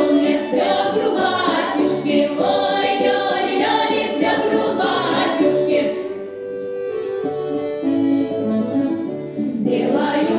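Women's folk ensemble singing a folk-style song over rhythmic instrumental accompaniment. Around the middle the music drops to a softer passage of long held notes, and the beat comes back near the end.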